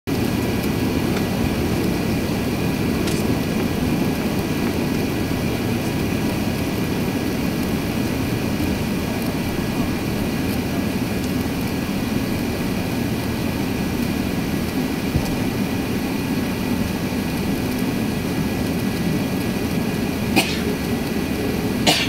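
Steady cabin rumble inside an Airbus A380-800 taxiing, with the engines at low power and the cabin air running, and a few faint steady high tones over it. A short, sharp, cough-like sound comes near the end.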